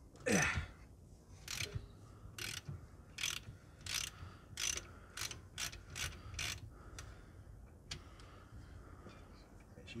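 Hand ratchet on a 14 mm hex socket undoing the rear differential drain plug. A loud first pull with a brief falling squeak is followed by about nine clicking ratchet strokes, which come faster as the plug frees up. Only faint ticks are heard after about seven seconds.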